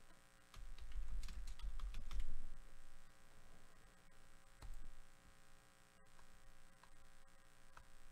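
Computer keyboard typing, a quick run of key clicks with low desk thuds about half a second to two and a half seconds in, then a single knock near five seconds, over a steady electrical hum.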